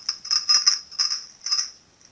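A small bell jingling in quick bursts, about five in under two seconds, as the Yorkie runs and spins.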